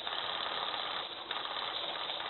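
Rapid automatic rifle fire, a steady unbroken rattle.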